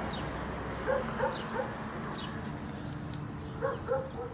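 Miniature pinscher giving short, high yips: a few quick ones about a second in and two more near the end.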